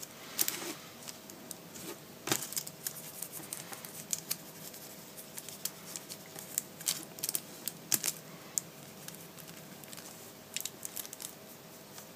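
Paintbrush dabbing and stroking acrylic paint onto crackly tissue paper: quiet, irregular light crinkles and ticks of bristles and paper.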